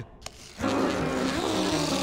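Cartoon sound effect: a steady, rough noise with a low hum underneath, starting about half a second in.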